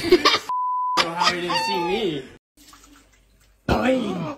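People's startled voices, with a short steady censor bleep lasting about half a second, about half a second in, cutting over a word; after a quieter stretch the voices break in again suddenly near the end.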